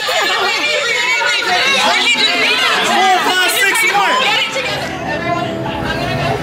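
Overlapping chatter of several people talking at once, with a low steady rumble coming in near the end.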